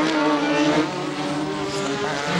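Formula One car engine running at high revs on a wet circuit, over a steady hiss of spray and rain. The engine note thins and drops away about halfway through.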